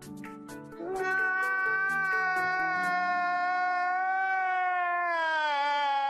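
A man crying out in one long, high wail that starts about a second in, holds, then sinks slightly in pitch toward the end, over faint music.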